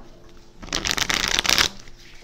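Tarot cards being shuffled by hand: one dense run of rapid card flicks lasting about a second, starting about half a second in.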